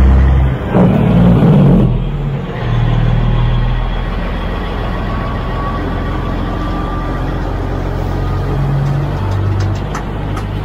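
Diesel semi truck pulling a loaded flatbed trailer past. Its engine is loudest in the first two seconds as it pulls off, then settles into a steady low drone.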